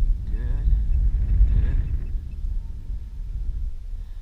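Wind buffeting the microphone outdoors, a loud irregular low rumble that eases off after about three seconds, with a man's voice briefly in the first two seconds.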